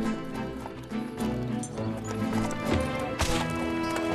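Carriage horses' hooves clip-clopping on a path, with sustained film-score music running underneath.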